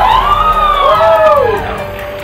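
Music with a siren wailing over it: several overlapping rising-and-falling tones, each under a second long, dying away near the end.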